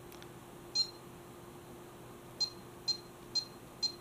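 Bully Dog GT gauge tuner beeping as its buttons are pressed to step through the menu. One short high beep comes about a second in, then four more about half a second apart in the second half.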